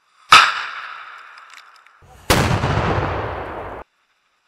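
A sharp, loud bang from a blast-simulation charge about a third of a second in, dying away over about a second and a half. A second sudden burst of heavy noise follows about two seconds later and cuts off abruptly.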